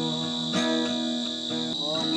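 Crickets chirring steadily in one high, even band, over music: strummed guitar chords with a held sung note.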